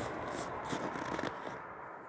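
Footsteps crunching in packed snow: a quick run of crackles and clicks that fades out about one and a half seconds in.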